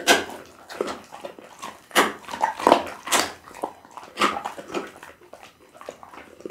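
Pit bull chewing a chunk of raw meat close to the microphone: irregular wet chewing strokes, about one to two a second.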